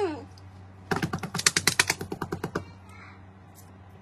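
A rapid run of about a dozen and a half sharp taps or clicks, about ten a second, lasting under two seconds.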